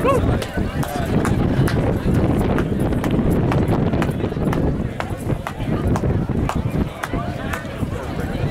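Indistinct voices of a crowd, over a dense low rumble of wind buffeting the microphone, with scattered sharp knocks of the camera being handled and bumped in the jostle.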